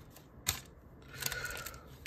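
A stack of Topps Chrome trading cards handled in the hand: a single sharp click about half a second in, then a soft sliding rustle as the cards are shifted.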